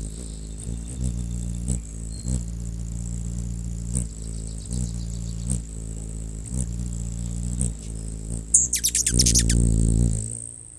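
A steady low drone with a few soft knocks underneath. Near the end, a burst of rapid, high bird chirps lasting about a second and a half, from birds at the nest as the adult bird arrives.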